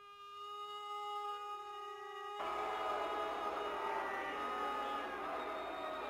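Western film score music: one note is held steady for about two seconds, then a fuller sound of several sustained notes comes in and runs on.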